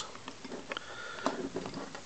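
Faint handling noise from the small metal chassis and case of an FX-4CR transceiver being slid back together by hand, with a few light clicks.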